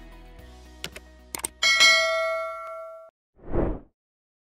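Subscribe-button animation sound effects: a few quick mouse clicks, then a bright bell ding that rings out for about a second and a half, followed by a short whoosh. Quiet background music fades out under the clicks.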